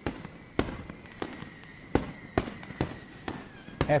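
Fireworks going off: sharp cracks and pops at irregular intervals, about two a second, over a hiss, with a faint steady high whistle underneath.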